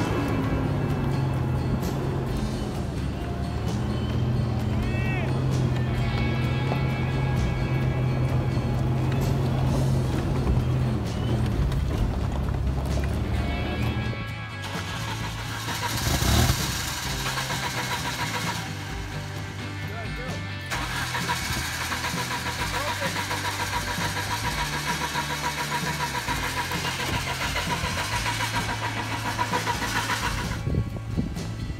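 A truck engine labours in four-wheel-drive low range under background music. After a cut, a vehicle engine is heard again, with a brief loud burst about halfway through.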